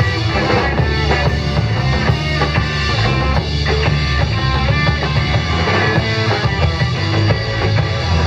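Garage rock band playing live and loud: drum kit, electric guitar and an electric combo organ.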